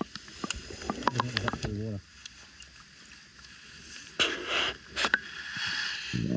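Water sloshing and rushing around a submerged camera, heard muffled, as people wade through a shallow pool. A short muffled voice comes in the first two seconds, and two louder rushes of water come about four and five seconds in.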